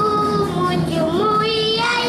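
Young girls singing into a microphone, holding long notes that slide between pitches.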